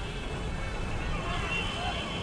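Street ambience fading in at the start of a rap track: steady traffic-like noise with faint voices in it.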